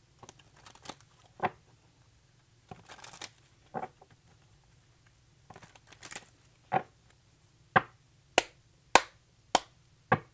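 Tarot cards being shuffled by hand: soft rustles of cards sliding, broken by sharp slaps of cards against the deck. The slaps grow sharper near the end, four of them in quick succession about half a second apart.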